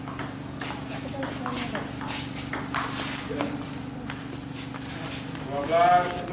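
Table tennis rally: the ping-pong ball clicking sharply off paddles and table in a quick, uneven series of hits. A voice calls out loudly near the end.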